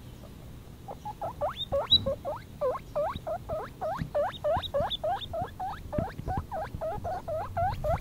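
Four-week-old baby guinea pig squeaking loudly, a quick series of short upward-sweeping wheeks at about three to four calls a second, starting about a second in.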